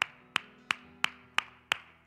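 One person clapping hands in a steady rhythm, about three sharp claps a second, six in all.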